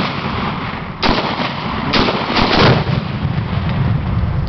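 AR-15 rifle shots about a second apart, then a louder blast as the exploding target is hit and goes off in a cloud of smoke, with a low rumble ringing on after it.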